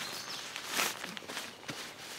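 Nylon tent stuff sack rustling as it is handled, with a louder swish a little under a second in.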